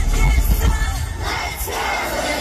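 Concert crowd cheering and screaming over loud pop music with a strong bass from the arena sound system, as heard by a phone in the audience.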